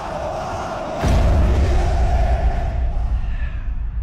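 Stadium crowd roaring, then a deep low boom about a second in that rumbles on under it as the higher sound thins out toward the end.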